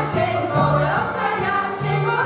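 Women's folk choir singing a song together, with a violin and a steady bass line underneath that changes note about every half second.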